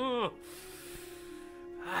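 The last burst of a run of laughter in the first moment, then soft background music holding a steady note.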